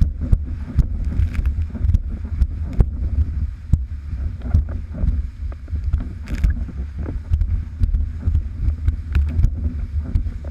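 Gusty wind buffeting the microphone of a camera riding on a windsurfer under way: a loud, constant low rumble, broken by frequent sharp knocks and splashes as the board runs over chop.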